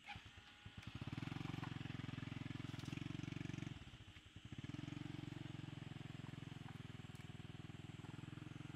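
Small motorcycle's engine catching with a few spaced beats, then running at a steady fast beat as the bike pulls away through grass. Its level dips briefly about four seconds in, then it picks up again.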